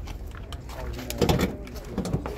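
Indistinct background voices over a steady low rumble, with a few faint clicks about a second in.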